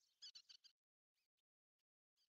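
Near silence, with a brief cluster of faint high-pitched chirps in the first second.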